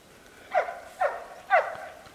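Australian Shepherd barking three times, about half a second apart, each bark falling in pitch.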